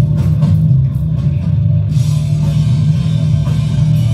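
Loud heavy rock music with drum kit and guitar over a strong bass line.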